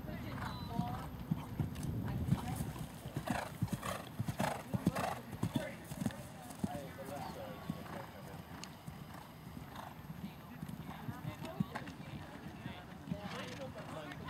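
Horse's hooves striking the arena footing at a canter, a run of sharp hoofbeats that is loudest a few seconds in, with faint voices around it.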